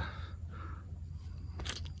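Faint steady low hum in a pause between speech, with a brief faint rustle about half a second in.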